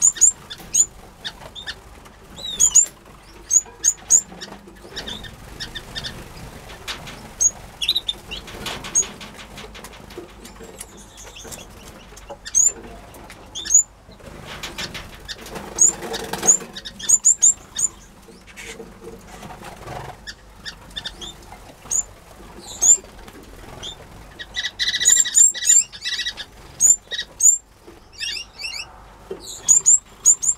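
Small aviary finches calling with short, high chirps, with flurries of fluttering wings as birds fly between perches and nest boxes, most plainly about 9 and 16 seconds in. Near the end a longer call holds a steady pitch for about a second.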